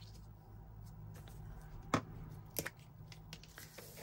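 Hands handling paper and fabric on a cutting mat: faint rustling, with a sharp click about two seconds in and a fainter one shortly after, over a low steady hum.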